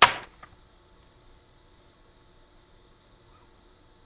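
A single sharp knock right at the start that dies away within a fraction of a second, then faint room tone with a low steady hum.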